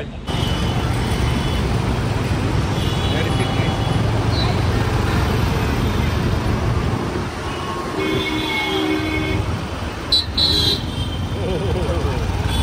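Motorbike ride through dense city traffic: steady engine and road noise, with vehicle horns honking several times, about three seconds in, again around eight to nine seconds, and once more near ten seconds.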